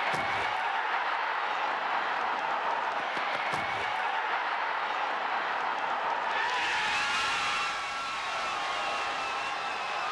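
Steady ballpark crowd noise from a World Series crowd after a three-run home run. About six and a half seconds in, the sound changes and a few thin, sustained tones come in over the crowd.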